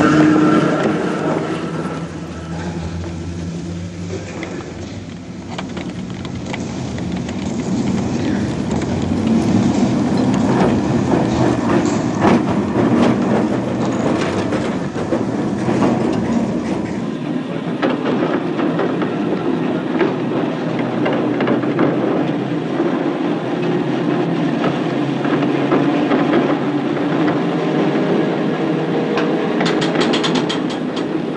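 A rail vehicle running along track: a steady rumble with scattered clicks and knocks from the wheels on the rails. The deepest part of the rumble drops away about seventeen seconds in.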